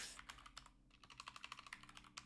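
Faint typing on a computer keyboard: a quick, irregular run of keystroke clicks.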